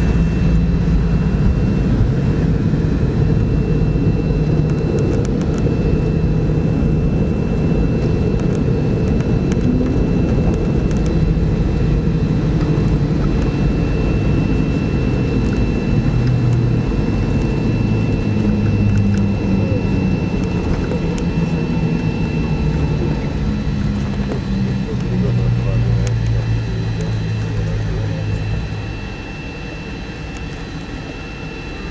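Cabin noise of a McDonnell Douglas MD-80 rolling on the ground after landing: a steady low rumble with the drone of its rear-mounted Pratt & Whitney JT8D turbofans and a thin steady whine. The noise drops somewhat near the end.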